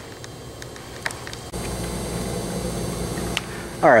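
Faint background hiss, then from about a second and a half in a steady low rumbling hum, with a short click shortly before the end.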